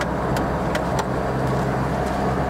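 1982 Peugeot 505 GR Estate's two-litre, eight-valve, four-cylinder carburettor petrol engine running steadily and smoothly while driving, heard from inside the cabin along with road and tyre noise.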